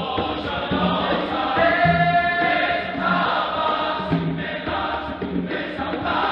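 Large men's choir singing in harmony, over a steady low beat about once a second; a chord is held for about a second, around two seconds in.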